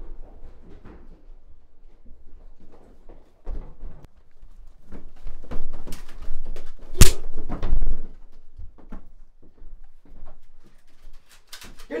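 Scattered knocks, thuds and scuffling of people moving fast through a house, with one sharp, very loud bang about seven seconds in.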